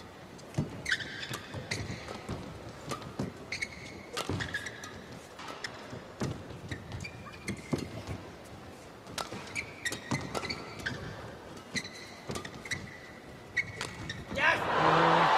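Badminton rally: rackets striking the shuttlecock in an irregular run of sharp cracks, with short high squeaks from the players' shoes on the court mat over a quiet arena murmur.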